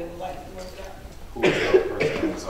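A person coughing, one loud cough about one and a half seconds in, after a moment of quiet talking.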